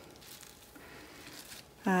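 Faint, soft rustling of a wet felted wool purse being handled and folded on bubble wrap, with a short spoken "uh" at the very end.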